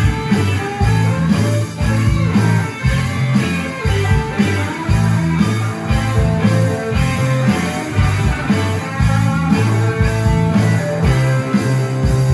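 Live rock band playing an instrumental passage: electric guitars and bass moving through low riff notes over a steady drum beat.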